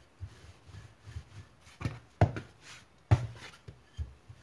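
Wooden rolling pin rolling out a round of dough on a floured wooden work table: a soft repeated rumbling with each pass, and a few sharp knocks, the loudest about two and three seconds in.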